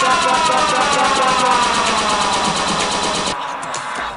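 Electronic dance music breakdown: a siren-like synth tone glides steadily downward over a fast, ticking pulse. The high end drops out and the sound thins near the end.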